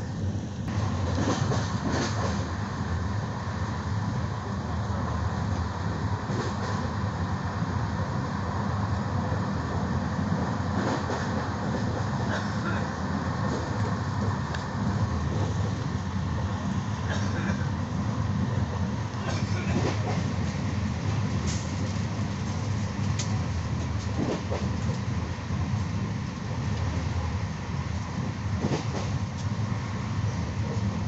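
Running noise of a train heard from inside a carriage: a steady low rumble of the wheels on the track, with scattered short clicks as the wheels pass over rail joints.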